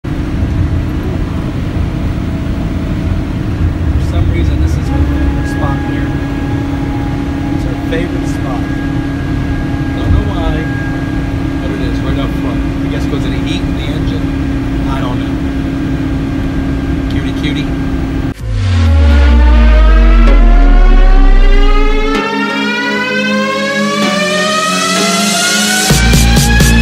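Steady low rumble with a steady hum, the sound of a vehicle under way heard from inside. About 18 seconds in it gives way to a loud sound effect: a rising sweep of several tones over a deep boom that falls in pitch.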